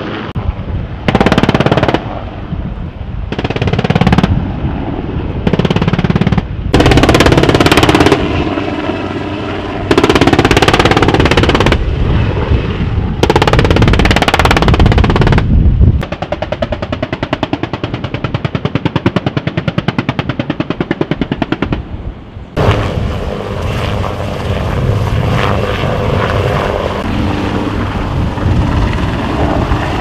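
About six bursts of automatic gunfire, each one to two seconds long, from an attack helicopter's gun strafing a ground target. In the second half comes helicopter rotor noise, first a fast even blade beat, then a steady run as a helicopter comes in low.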